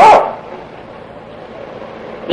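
A man's spoken word trailing off, then a pause with only a faint, steady recording hiss.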